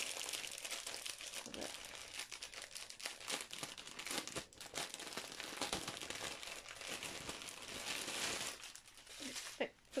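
Clear plastic bag crinkling and rustling steadily as it is handled and a bundle of small plastic packets of diamond-painting drills is pulled out of it.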